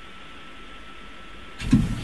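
A pause in a man's speech: steady low hiss with a faint high steady tone, then the voice comes back in near the end.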